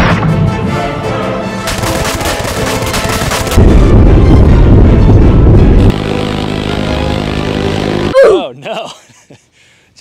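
M134D minigun (six-barrel, about 3,000 rounds a minute) firing one continuous burst of about two seconds, heard as a dense unbroken roar rather than separate shots, laid over dramatic music. The music and the rumble stop abruptly near the end.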